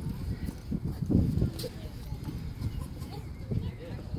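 Low, indistinct talk among a group of people, over an uneven rumbling background.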